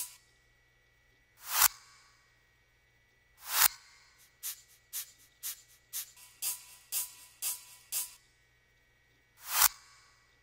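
Sparse deep house electronic music: three swelling noise sweeps that build and cut off sharply, about one and a half, three and a half and nine and a half seconds in. Between them runs a string of short ticks about two a second, over a faint steady hum.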